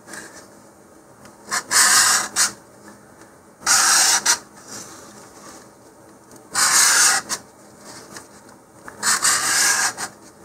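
100-grit sandpaper rubbed by hand across a spiral-wound paper rocket body tube, in four short bursts of strokes with pauses between. The tube's surface is being roughened so that glue will adhere to it.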